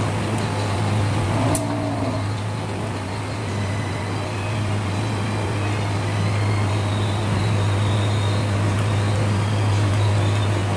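A steady low hum runs unbroken throughout, with one sharp click about one and a half seconds in.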